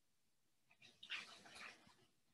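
Near silence in a pause of a talk over a call, broken by one brief faint sound about a second in.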